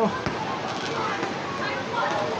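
Fireworks going off: one sharp bang shortly after the start and fainter pops later on. Under them is a steady outdoor background of distant voices.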